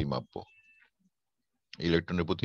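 A teacher's voice speaking, breaking off for a pause of about a second before resuming near the end.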